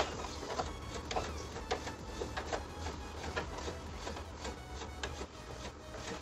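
A small brush scrubbing the aluminium fins of a split AC indoor unit's evaporator coil in short scratchy strokes, about two a second, the sharpest one right at the start.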